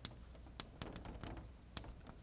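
Chalk writing on a blackboard: a run of quick, irregular taps and short scratches as letters are drawn.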